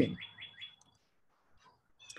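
A quick run of about five short, high chirps, like a small bird, right as the talking stops.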